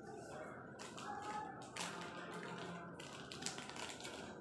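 Faint handling noises from hands winding a cord around a beaded blouse tassel: soft rustles and light taps.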